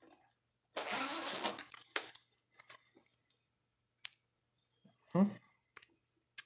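Fabric bag and shoulder strap being handled: about a second of nylon rustling and scraping early on, then a few light, sharp clicks, typical of a strap clip being fitted.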